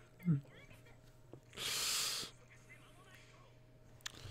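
A man's stifled laughter close to the microphone: a brief chuckle rising in pitch, then a sharp breathy exhale through the nose about two seconds in.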